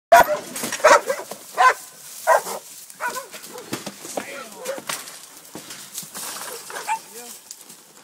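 Dogs barking at a penned wild hog: loud barks about every three-quarters of a second for the first two and a half seconds, then quicker, softer barking through the rest.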